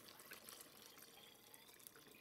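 Chicken stock poured from a glass measuring jug into a Dutch oven of browned pork and vegetables: a faint trickle of liquid with a few small ticks.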